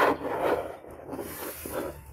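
Hands rubbing and sliding over a cardboard box and its fabric ribbon, a dry scraping that is loudest at the start and rises again briefly near the end.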